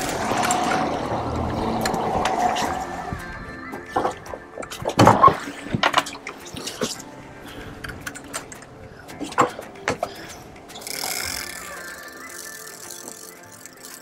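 Background music, with several sharp knocks and clatters in the middle.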